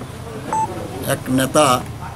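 A single short electronic beep about half a second in, then a man talking.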